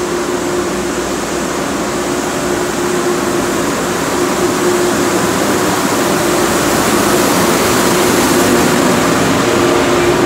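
ETR 500 high-speed electric train running past along the platform in an enclosed station, a steady hum with one held tone, slowly growing louder as the carriages go by.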